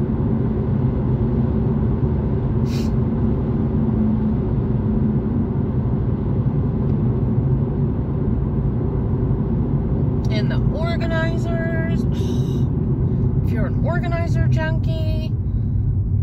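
Steady road and engine rumble inside a car's cabin at highway speed. A voice sounds twice, briefly: once about ten seconds in and again near the end, each time sliding up into a held pitch.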